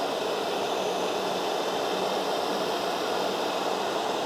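Electric heat gun running steadily: an even rushing blow of air with a faint low motor hum, heating vinyl wrap to soften it at an edge.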